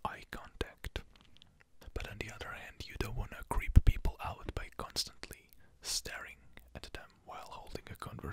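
A man whispering very close into a microphone, the words indistinct, with mouth clicks between them and a breath pop on the microphone about halfway through.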